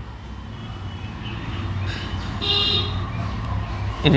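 Steady low background rumble with a short high-pitched toot about two and a half seconds in.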